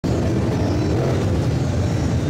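Engines of several B-Modified dirt-track race cars running together around the oval, a steady layered drone of engines at different pitches.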